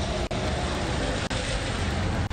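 Steady street noise of traffic on a wet road, picked up by an outdoor microphone. The signal drops out briefly about once a second.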